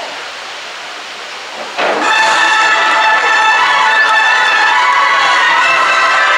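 Crowd murmur, then about two seconds in a brass band starts playing loud, sustained chords that continue to the end.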